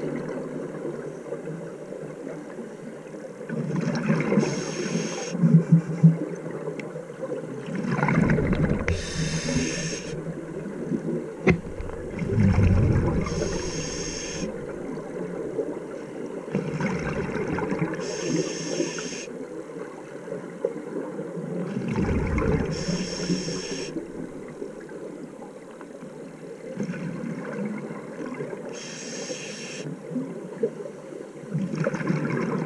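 Scuba breathing through a regulator underwater: a hiss with each inhalation and a low rumble of exhaled bubbles, repeating about every four to five seconds.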